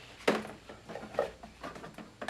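A few sharp plastic clicks and knocks from a hand trigger sprayer on a hose to a jug of insecticide being worked and handled, the loudest about a quarter-second in. The sprayer is stuck and not spraying properly.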